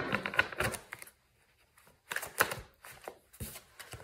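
A deck of tarot cards shuffled by hand: a rapid run of card flicks and clicks for about a second, then quiet, then two shorter runs of clicks.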